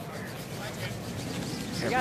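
Curling arena ambience: a steady low murmur with faint, distant voices.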